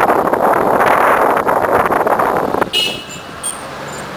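Road noise of a moving car, with air rushing past an open window, that drops away suddenly about two-thirds of the way through; quieter street traffic follows, with a brief high-pitched tone.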